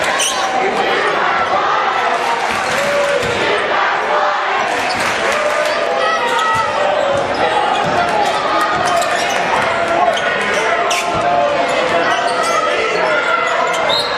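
Basketball bouncing on a hardwood gym floor as a player dribbles, under the steady din of a packed crowd's many overlapping voices echoing in the gym.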